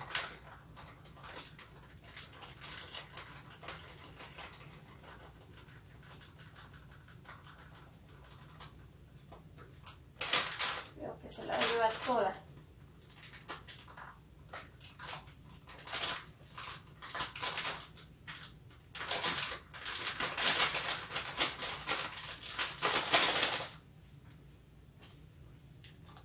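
A bag of precooked corn flour crinkling and rustling as flour is shaken out of it into a stainless steel bowl, in several bursts, the longest and loudest over the last few seconds.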